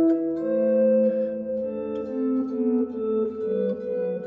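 Electric guitar playing two-note shapes: a stepwise bass line in the key of one sharp (G major) under a higher note that repeats on the third string, the notes ringing into each other.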